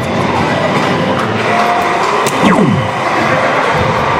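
A soft-tip dart lands in a single segment of a DARTSLIVE electronic dartboard about two seconds in. The machine answers with its hit sound, a tone sliding quickly down in pitch, over a steady hall background.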